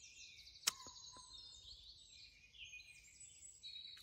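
Faint songbirds singing and trilling in woodland, with a single sharp click about two-thirds of a second in.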